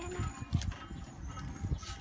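A small plastic bag crinkling as it is worked open by hand, with a few short sharp crackles, over an irregular low rumble.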